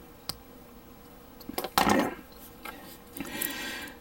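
Hobby knife scraping and nicking a small plastic model-kit part to clean up its edge: a sharp click near the start, a few small clicks about one and a half seconds in, and a short faint scraping near the end.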